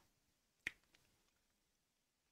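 Near silence with a single short, sharp click about two-thirds of a second in.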